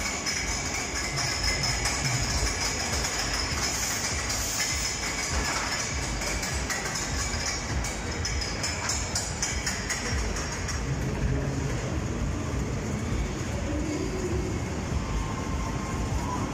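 A children's caterpillar roller-coaster train running round its track, its wheels rumbling and clattering, with music playing.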